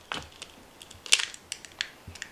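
Eggshell cracking and being prised apart by hand: a few small, sharp crackles and clicks, the loudest about a second in.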